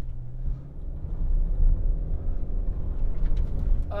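2021 Subaru Crosstrek Sport's 2.5-liter flat-four engine working hard as the car struggles for grip climbing a loose dirt incline: a low, steady rumble.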